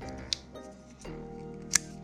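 Two sharp metallic clicks from a Smith & Wesson M&P Sear assisted-opening flipper knife as its blade is worked shut and flipped open. They come about a second and a half apart, the second louder, over soft background guitar music.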